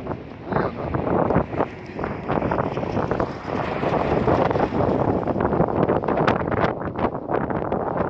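Wind buffeting the microphone, a loud, gusty rush that swells and dips unevenly.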